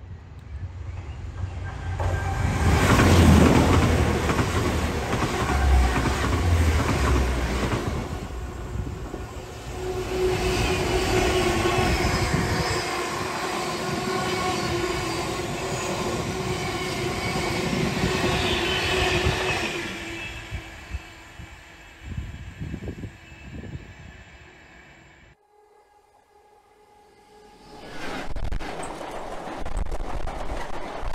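A pair of diesel freight locomotives, a Class 66 and a Class 70, pass close by, their engines loudest a few seconds in. They are followed by a long rake of empty container flat wagons rolling past with a steady rumble and a sustained tone, and the wheelsets knock over the rail joints as the train fades away. Near the end the sound of another freight train, a string of tank wagons, rolls in close.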